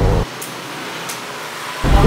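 Steady, even background hiss. A low rumble drops out about a quarter second in and comes back near the end.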